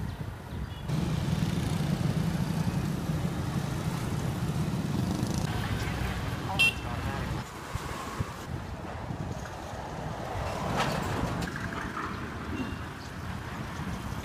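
Street traffic heard while riding a bicycle: a steady low rumble and road noise, with a brief sharp high-pitched sound about six and a half seconds in.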